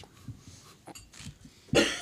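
A single short cough from a person near the end, after a quiet pause.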